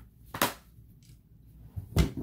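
A sharp click about half a second in, then another at the very end.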